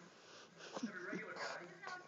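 A person's indistinct, breathy murmuring voice, beginning about a third of the way in, with a few faint clicks.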